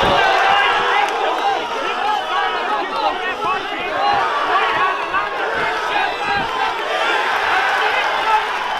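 Crowd of fight spectators shouting and cheering, many voices overlapping with no break, loudest in the first moment.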